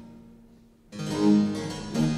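Baroque continuo accompaniment, led by harpsichord. The previous notes die away into a brief, almost silent pause, then a new chord enters about a second in and sounds on.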